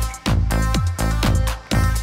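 Live electronic dance music played from a laptop and pad controller: a steady beat of deep kick drums, each dropping in pitch, under sustained synth chords, the whole mix dipping and swelling in time with the kick.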